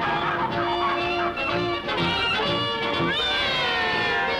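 Orchestral cartoon score with squawking, honk-like bird calls over it. A long falling squawk comes about three seconds in.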